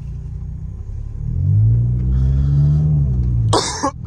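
Nissan Altima's engine heard from inside the cabin, revving up about a second in under acceleration, its note rising and then easing off. A person clears their throat near the end.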